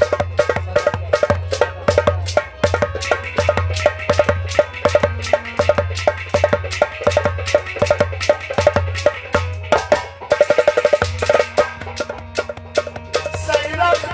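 Harmonium playing a melody over fast hand percussion keeping a quick, steady beat, with no singing.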